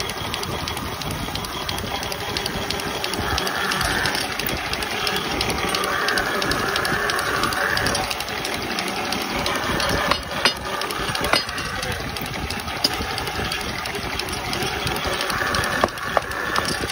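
A workshop wood lathe's motor running steadily. A few sharp knocks about ten to thirteen seconds in and again near the end, from a wooden block being tapped with a hammer onto a turned wooden shaft.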